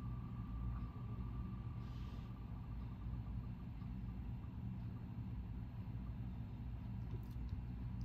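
Faint ticking of an online name-picker wheel spinning, heard through a computer's speakers. It starts as a fast, almost continuous tick, then spaces out and fades within the first few seconds as the spin winds down, over a low steady room hum.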